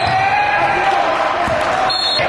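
Basketball bouncing on a hardwood gym floor, with voices echoing in the large hall.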